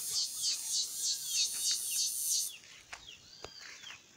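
Insects calling in a fast, high pulsing rhythm, several pulses a second, that stops abruptly about two and a half seconds in. Short bird chirps sound through it and on after it, with a couple of sharp clicks near the end.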